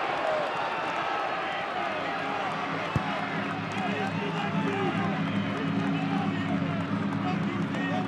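Football stadium crowd and players' voices just after a goal: many overlapping shouts and calls. A sharp thud comes about three seconds in, and a low steady hum joins from then on.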